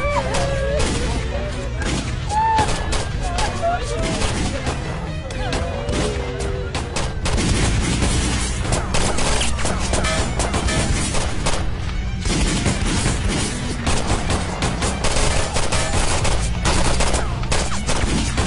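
Sustained heavy gunfire: many rifle shots in quick succession, overlapping one another as several guns fire at once.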